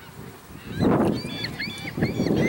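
A series of short, high honking bird calls, repeating several times from about a second in, over a loud rushing noise.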